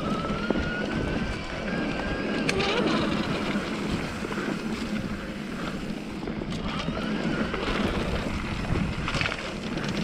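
Electric mountain bike with a 1000 W Bafang mid-drive motor ridden along a dirt singletrack: a steady rumble of tyres over the trail and wind on the microphone, with occasional sharp knocks from the bike over bumps. A faint whine rises in pitch over the first couple of seconds, from the motor under throttle and assist.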